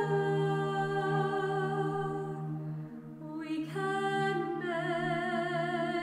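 A cappella vocal music: several voices singing long held notes over a steady low note, with a brief dip about three seconds in before the singing picks up again.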